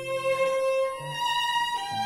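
Live violin playing a Costa Rican patriotic tune in long held melody notes, stepping up and then down near the end, over plucked acoustic guitar accompaniment.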